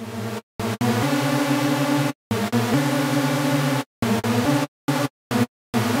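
u-he Hive software synthesizer playing a saw-wave patch with 16-voice unison: a sequence of held notes and chords of uneven length, each cut off sharply by brief silences, while the oscillator's pan and stereo width are turned.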